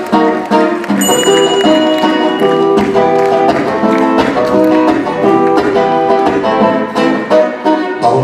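Acoustic guitar played solo, a steady run of quickly plucked notes and chords.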